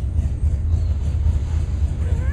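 Steady, loud low rumble with a faint hiss above it: outdoor background noise, with no speech.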